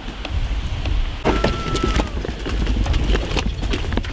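Low wind rumble on the microphone with irregular clicks and knocks, the sort that footsteps and crew handling gear make; everything gets louder after an abrupt change about a second in.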